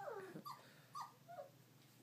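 Four-week-old Goldendoodle puppies whimpering faintly: four short, squeaky calls in the first second and a half, most of them falling in pitch.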